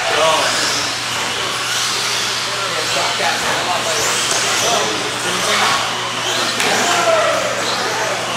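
Indistinct chatter of many overlapping voices in a large, reverberant hall, with no single clear speaker.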